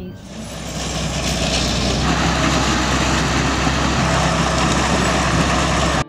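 A large engine running steadily under loud, even noise. It fades in over about the first second and cuts off abruptly at the end.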